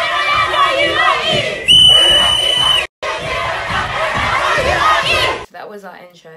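Audience cheering and shouting loudly. A loud, steady, high-pitched tone sounds over it for about a second near the middle. The sound drops out for an instant just after the tone, and the cheering stops short near the end.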